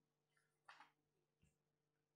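Near silence: room tone with a steady faint hum, broken by one brief soft noise a little under a second in and a faint knock about a second and a half in.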